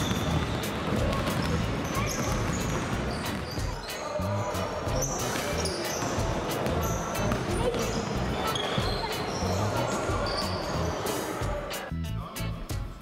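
Many basketballs bouncing on a sports-hall floor as a group of players dribbles, in a thick, overlapping patter of bounces, with voices in the hall and background music underneath.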